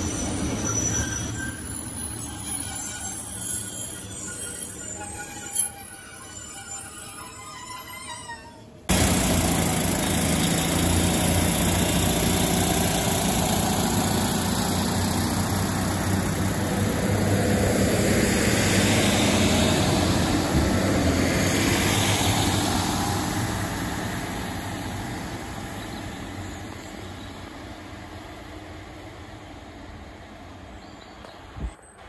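A Northern Class 156 diesel multiple unit running along the platform, engine and wheels on the rails with shifting whining tones. After an abrupt cut about nine seconds in, a diesel multiple unit runs past close by, a loud steady rumble and rail noise that fades away over the last several seconds.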